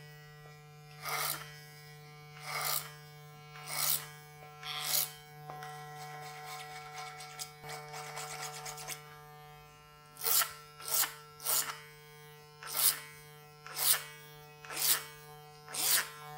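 Cordless hair clipper running with a steady hum as it cuts over a comb, tapering the neckline. Each pass through the hair adds a short rasping swell, about one a second, with a stretch of continuous cutting in the middle.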